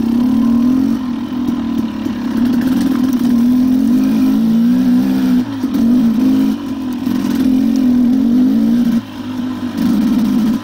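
KTM dirt bike engine running under way on a trail ride, its revs rising and falling with the throttle, with a few brief dips where the throttle is eased off.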